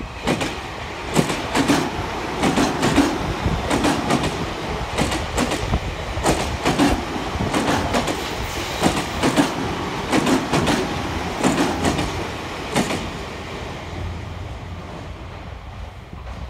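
Tobu 50070-series electric train passing close by, its wheels clacking over the rail joints in quick pairs of beats over a steady running rumble. The clacks stop and the sound fades about 13 seconds in as the last car goes by.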